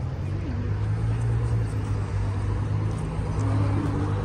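Steady low rumble of a motor vehicle engine running, with faint voices in the background.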